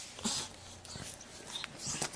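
Capuchin monkey making a few faint, short breathy sounds through its nose while rubbing banana pepper into its fur; the pepper is making its nose run.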